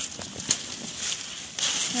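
Dry fallen leaves rustling and crunching as someone moves on their knees through leaf litter, with one sharp click about half a second in.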